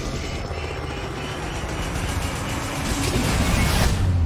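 Film sound effects of a burning helicopter going down: rotor and engine noise in a dense rumble that builds toward the end and cuts off abruptly, with trailer music underneath.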